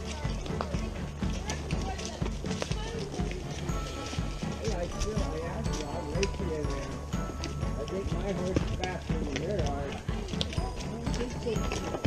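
Horses walking on a dirt trail: hooves clopping in an uneven, overlapping rhythm, with voices in the background.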